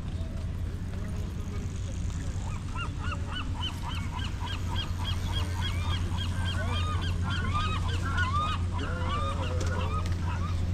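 A flock of birds calling: many short, repeated calls overlapping, starting a couple of seconds in and growing busier, over a steady low rumble.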